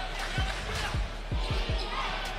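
Basketball dribbled on a hardwood court: about five low bounces, coming faster in the second half.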